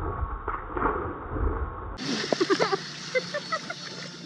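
A splash as a person flips backward into a swimming pool, followed about two seconds in by bursts of laughter.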